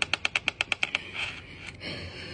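A fast, even run of light clicks close to the phone's microphone, about ten a second for about a second, from hands and a ring rubbing and tapping against the phone.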